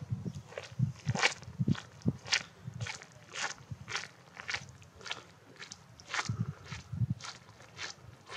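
Footsteps crunching on a dry dirt path, about two steps a second, growing slightly fainter as the walker moves away.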